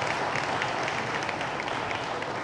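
A small audience applauding steadily: many hands clapping at once.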